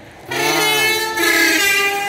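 Horn of a large cargo truck passing close on the highway: a steady blare of several held tones starting about a third of a second in and lasting to the end.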